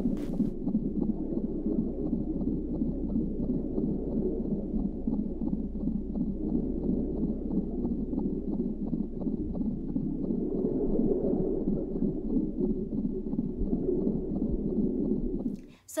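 Steady, muffled low womb-like ambient sound played by a pregnancy app's 3D baby view. It cuts off shortly before the end.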